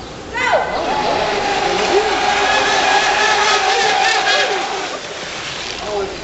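Radio-controlled racing boat's motor at full throttle on a drag run: a sudden high-pitched engine note that drops in pitch as the boat passes close, then holds a steady high whine for about four seconds and fades.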